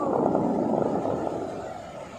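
Dubai Fountain's water jets falling back into the lake as the show ends: a steady rushing of spray that fades as the jets die down.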